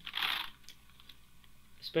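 A short hiss at the start, then a few faint computer mouse clicks.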